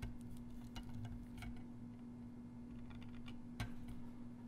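Steel seal-carving knife cutting into the face of a stone seal, a run of small irregular clicks and scrapes as chips come away, the sharpest about three and a half seconds in. A steady low hum lies underneath.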